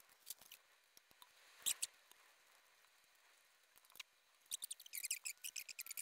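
Faint, scattered clicks and rustles of hands handling the parts of a TV wall mount: its paper instruction sheet and its metal arms and hardware. Near the end a quick run of small light clicks comes as the arms are fitted to the plate.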